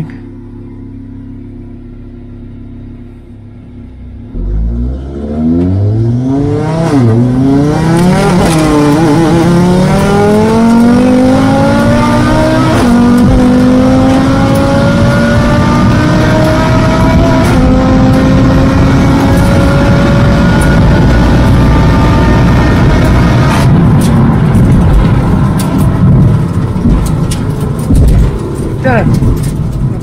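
Tuned Audi RS3's turbocharged 2.5-litre five-cylinder, heard from the cabin. It idles for a few seconds, then launches about four seconds in and pulls hard through a string of upshifts, its pitch climbing in each gear. About 23 seconds in the driver lifts off and the engine note falls away, leaving road and wind noise.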